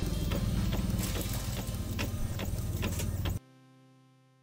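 Epson L120 ink-tank inkjet printer printing a sheet: the print-head carriage sweeps back and forth with a steady whir and regular ticks. The sound cuts off abruptly about three and a half seconds in, leaving a faint fading musical tone.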